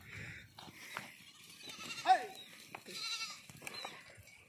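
Goats bleating, the loudest a single call with a falling pitch about halfway through, followed about a second later by a higher-pitched call.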